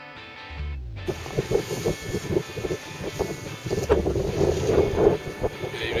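Wind buffeting a camera microphone on the deck of a sailing yacht at sea, an uneven rumble with irregular gusty flutters, starting about a second in.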